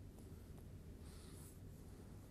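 Near silence: room tone with a steady low hum and a faint rustle about a second in.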